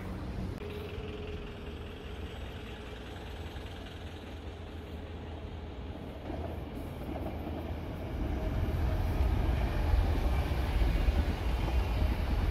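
Double-deck electric commuter train approaching and passing through the station without stopping. Its low rumble of wheels on rails grows louder about two-thirds of the way in and stays up as the carriages go by.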